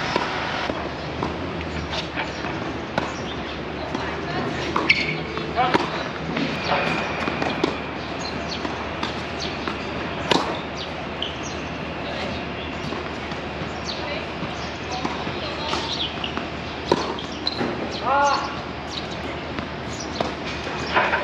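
Tennis balls struck by racquets and bouncing on a hard court during a rally: sharp hits at irregular intervals, the loudest about halfway through as the near player hits a forehand.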